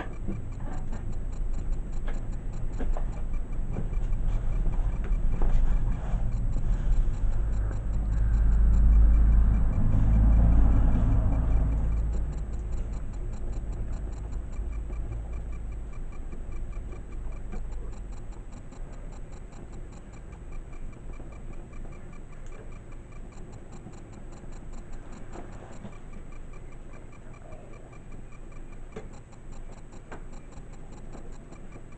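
A low rumble that swells to its loudest about a third of the way in and dies down by about halfway, over faint, even ticking that goes on throughout.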